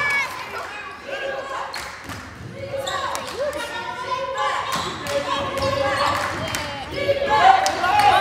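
Basketball being dribbled on a hardwood gym floor, repeated bounces echoing in the gym under the voices of players and spectators.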